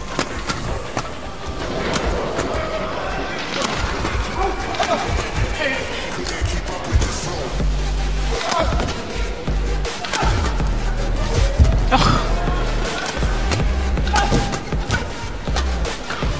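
Badminton rally in a doubles match: rackets strike the shuttlecock in quick, irregular exchanges, and shoes squeak on the court floor, over background music.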